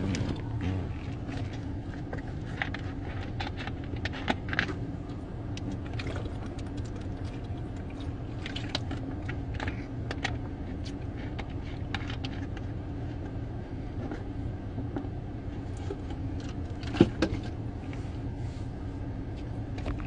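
Steady low hum inside a car's cabin, with scattered light clicks and taps from a hand-held phone being handled. One sharper click comes about three seconds before the end.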